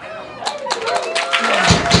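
Live drum kit starting to play on a club stage: cymbal or hi-hat strikes from about half a second in, with bass drum hits joining near the end and a steady held tone from the band's gear underneath.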